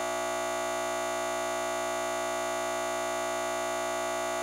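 A steady electronic buzz, unchanging in pitch and level, made of many evenly spaced tones: a digital glitch in the recording, with a short scrap of audio stuck repeating.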